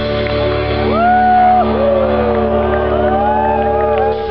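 Live rock band holding one loud, sustained chord through a festival PA, with crowd whoops and shouts gliding up and down over it from about a second in.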